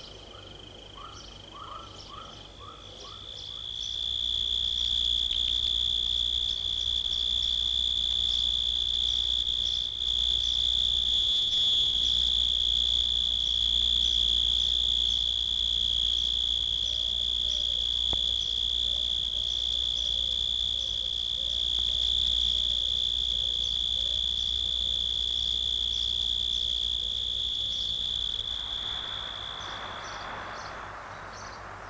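Abstract early-1970s electronic music: a steady, high, sustained whine swells in about four seconds in and holds over a low drone. Faint warbling sits lower down in the middle, and the whine drops away just before the end.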